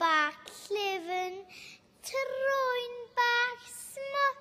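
A young girl reciting a Welsh poem, spoken in a sing-song, expressive way with long sliding vowels, in about four short phrases.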